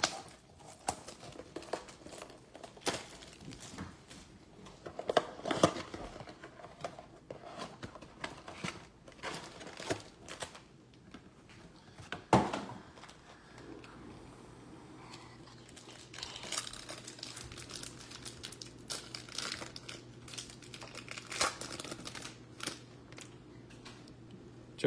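Plastic wrapping on a blaster box of baseball cards and the packs inside crinkling and tearing as they are torn open, in many short, irregular crackles with a few denser bursts. There is one sharp knock about twelve seconds in, and a faint low hum comes in soon after.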